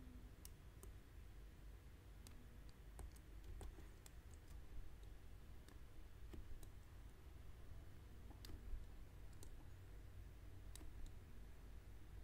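Near silence, with faint scattered clicks and taps roughly every second over a low steady room hum.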